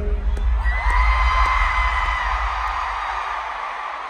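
Arena concert crowd screaming and cheering over the tail of the music, whose bass slowly fades away; the cheering eases off toward the end.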